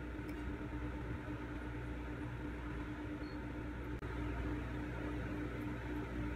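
Steady room noise with a constant low hum, with no clear events.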